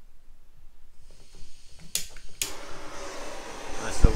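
Butane blowtorch head on a gas canister: gas starts hissing about a second in, then two sharp igniter clicks, the second lighting it into a steady rushing flame.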